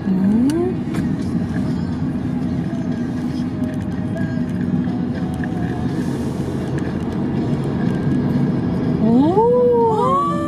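Steady drone of a car heard from inside the cabin while driving: engine and road noise. Near the end a voice slides up and down in pitch over it.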